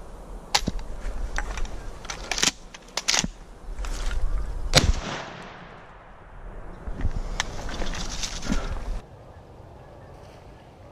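Several pump-action shotgun shots, sharp cracks each followed by a fading echo, the loudest about halfway through, over a low rumble that stops about a second before the end.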